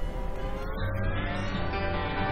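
A car engine revving up, its pitch rising steadily, after a brief rush of noise at the start. Music with a steady bass line comes in under it about a second in.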